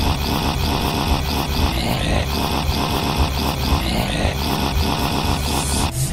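A cartoon soundtrack played backwards: a loud, dense jumble of sound with a fast repeating pattern.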